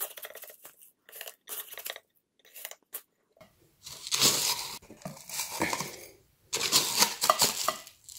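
Gritty potting mix crunching and rustling in short bursts as a large succulent rosette is pushed and settled into a glazed ceramic pot, growing louder in the second half.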